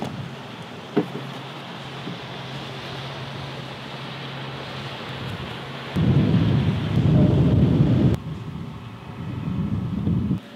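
Wind blowing across an outdoor microphone: a steady rush with one small click about a second in, then heavier low rumbling buffets from about six seconds in to about eight seconds.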